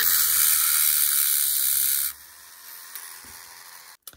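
Handheld rotary tool with a small grinding stone grinding a shell in a dish of water: a loud, harsh hiss over a low motor hum, which stops about two seconds in.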